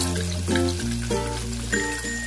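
Wet ground spice paste sizzling steadily in hot cooking oil in a wok, just after being added for sautéing, under background music of held notes that change every half second or so.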